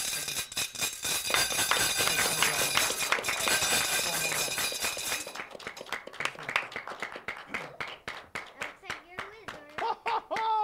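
Audience applause after a magic trick: dense clapping for about five seconds, then thinning to scattered claps that die away.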